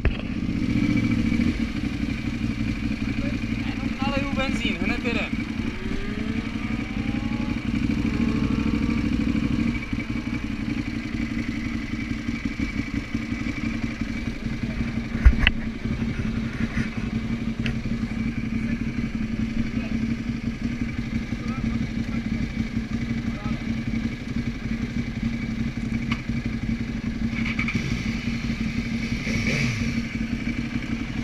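Ducati 1098's V-twin engine idling steadily, slightly louder for the first ten seconds, with one sharp click about halfway through.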